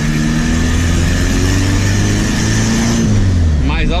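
Turbocharged VW Gol engine heard from inside the cabin, pulling with its pitch climbing for about two seconds, then dropping as the revs fall.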